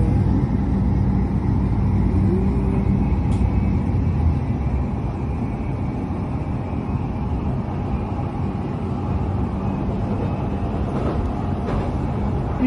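Electric commuter train running along the track, heard from inside the carriage: a steady low rumble of wheels and car body, with no change in pace.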